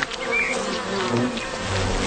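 Honeybee buzzing steadily.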